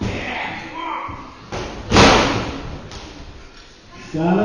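One loud thud about halfway through as a wrestler's body strikes the wrestling ring, echoing briefly in the hall, with two lighter knocks just before and after.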